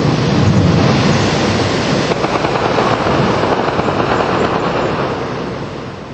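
Loud rushing, rumbling noise of the stone arch of Mostar's Old Bridge (Stari Most) falling into the river, with the splash of water and debris. It fades gradually over the seconds as the dust settles.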